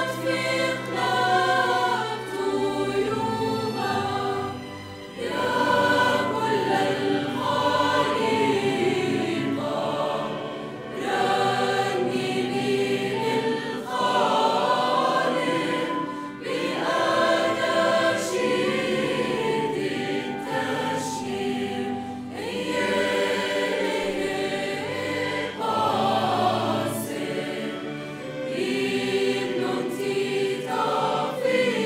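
Mixed choir of women's and men's voices singing a hymn in phrases that swell and ease, accompanied by a small orchestra with violins.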